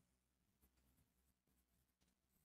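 Near silence, with faint short strokes of a pen or marker writing numbers on a board.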